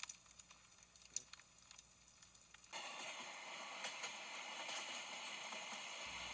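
Near silence with a few faint clicks, then a faint steady hiss of background ambience starts about three seconds in.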